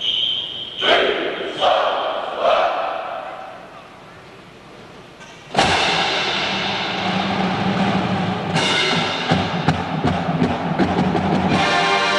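A marching band of brass and drums comes in suddenly and loud about halfway through, with drum strokes through the playing and held brass chords near the end. Before that there are a steady high whistle-like tone, three short sharp sounds and a brief lull.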